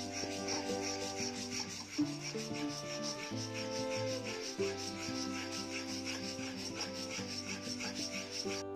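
A sandalwood stick rubbed quickly back and forth on a grinding slab to make sandalwood paste: a fast, even scraping of several strokes a second, over background music.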